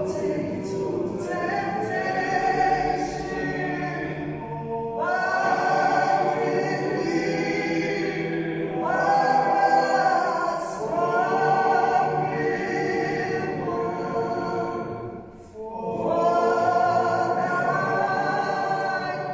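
A group of voices singing together in church, in long sustained phrases with short breaks for breath and a clear pause about fifteen seconds in.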